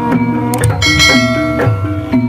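Javanese gamelan playing jaranan music: bronze gongs and kettle gongs, metallophones and drums keep a steady repeating beat, with a gliding melody line over them.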